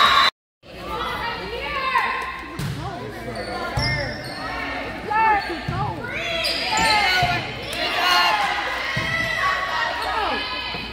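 A volleyball rally in a reverberant gym: the ball is struck a few times with dull thuds, and sneakers squeak on the hardwood floor. Players and spectators call out throughout. There is a brief dropout just after the start.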